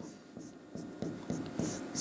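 A stylus writing by hand on the surface of an interactive touchscreen board: a quick, irregular run of light taps and short scratching strokes as a word is written.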